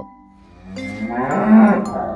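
A cow mooing once: a long call that starts about half a second in, swells to its loudest past the middle and fades near the end. Light background music runs underneath.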